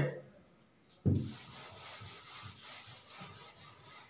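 Whiteboard duster wiping a whiteboard: a single knock about a second in, then a run of repeated back-and-forth rubbing strokes as the writing is erased.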